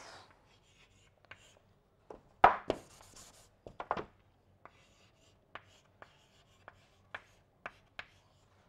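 Chalk writing on a chalkboard: a string of short taps and scratches as each stroke is made, the loudest tap about two and a half seconds in, followed by about a second of scratching.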